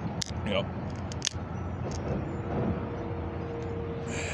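A few sharp clicks as a fingernail works at the tab of an aluminium beer can, over a low background rumble, with a faint steady hum coming in about halfway through.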